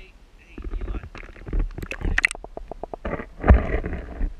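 Muffled knocks, clicks and water rushing picked up by a waterproof camera being moved about underwater among creek rocks, with a quick run of clicks in the middle and a heavier thump about three and a half seconds in.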